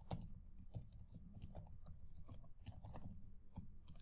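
Faint typing on a computer keyboard: a run of quick, irregular keystrokes entering a short command.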